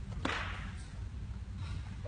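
A sharp slap about a quarter of a second in, trailing off in the echo of a large hall: a body landing on the mat in a jiu jitsu breakfall as an attacker is thrown. A fainter echoing slap follows near the end.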